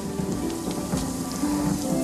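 Steady rain falling, with background music of held, sustained notes.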